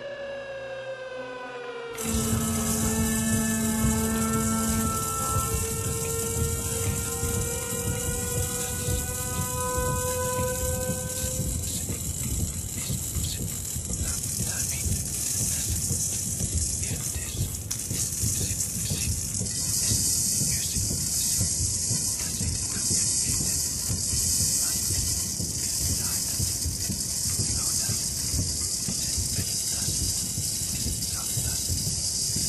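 Experimental music: a cluster of gliding sustained tones over a dense, noisy texture that sets in suddenly about two seconds in. The tones fade out by about twelve seconds in, leaving a thick wash of noise with a strong hiss.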